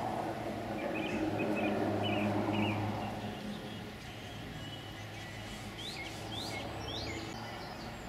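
Distant Mil Mi-24V 'Hind' helicopter giving a steady low hum from its rotors and twin turboshaft engines, which weakens after about three seconds as it flies off. Small birds chirp over it, with a few quick rising chirps near the end.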